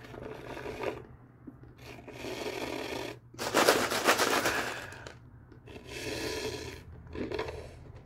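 Paper fast-food soda cup being handled and drunk from, in several noisy bursts of rattling and slurping; the loudest burst comes about halfway through.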